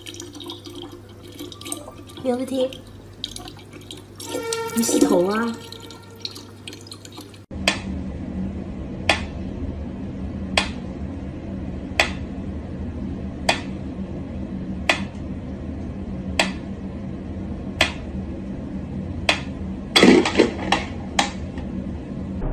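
A thin stream from a tap running into a plastic bottle, with brief voices. After a cut about seven seconds in, a mechanical metronome ticks slowly, about one tick every second and a half, over a low steady hum, with a louder sound near the end.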